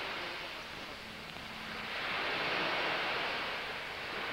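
Crowd noise in an ice arena, a steady rushing hiss that grows louder about halfway through.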